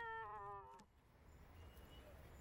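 A cat's drawn-out meow, already sounding at the start, sliding slightly down in pitch and wavering before it stops just under a second in.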